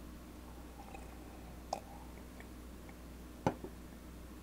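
A man sipping beer from a glass and swallowing, with small wet mouth clicks while he tastes it. A sharper knock comes near the end as the glass is set back down on the table.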